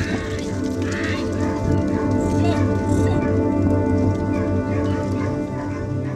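Background music with long held tones, with a few sheep bleats heard under it.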